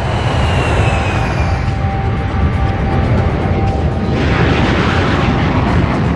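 B-52 bomber's Pratt & Whitney J57 turbojet engines at takeoff power: a steady, dense rush of jet noise with a high whine that falls slightly in pitch over the first couple of seconds. The noise grows brighter about four seconds in.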